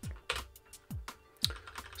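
Computer keyboard typing: a few separate keystrokes spread over two seconds, entering a short terminal command.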